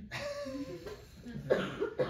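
Short bursts of a person's voice that are not words: a drawn-out vocal sound in the first second, then two sharp, loud bursts near the end.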